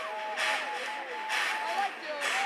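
Electronic dance music with the bass filtered out: a sharp clap-like hit about once a second under a high melody line that holds and slides between notes.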